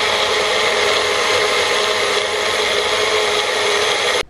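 Magic Bullet personal blender running steadily at full speed, blending a smoothie of frozen banana and frozen kale.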